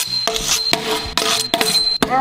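Metal blades striking a brick wall three times, each hit sharp and followed by a brief high metallic ring.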